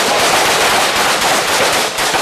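Sustained rapid rifle fire from assault rifles, the shots crowding together so thickly they overlap with no pause.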